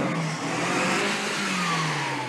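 Small van's petrol engine revving as it drives off slowly in a low gear, its pitch sinking in the second half.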